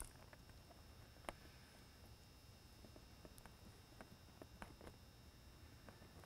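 Near silence with a few faint, scattered ticks as thin wire leads are twisted together by hand.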